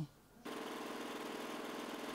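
Small engine running steadily at a constant speed, a buzzing hum that sets in about half a second in after a brief hush.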